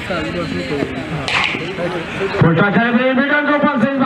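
Men's voices talking, with clearer, louder continuous speech from about halfway through.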